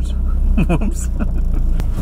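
Mitsubishi Evo's engine idling, a steady low hum heard inside the cabin, with a brief voice about half a second in.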